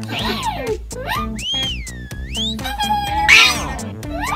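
Squeaky, meow-like cartoon voice noises that slide up and down in pitch, over background music. A short loud hiss comes near the end.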